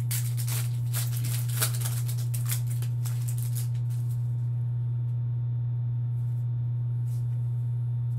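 A trading-card pack's wrapper crinkles and tears open in quick crackles for about the first four seconds, then a few faint taps and slides follow as the cards are handled. A steady low hum runs underneath throughout.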